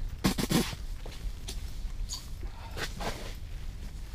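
Handling noise from a short ice-fishing rod and winter clothing: a louder rustle just after the start, then scattered faint clicks and rustles over a steady low rumble.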